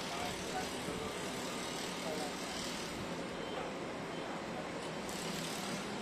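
Steady running of vehicle engines and street traffic, with faint, indistinct voices.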